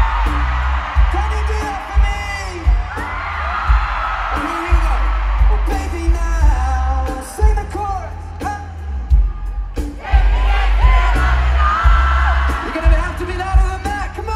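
Stadium crowd cheering and screaming over loud live music with a pounding bass beat.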